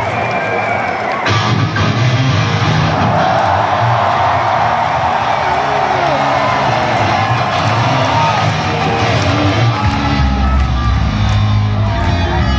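Live rock instruments, a bass line with electric guitar, playing through a large arena sound system over a big crowd cheering and calling out. A heavier low bass layer comes in about ten seconds in.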